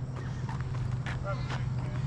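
Faint men's voices in the background, with a few light knocks about half a second apart over a steady low hum.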